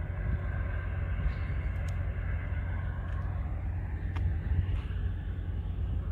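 A low, steady outdoor rumble with no clear events in it.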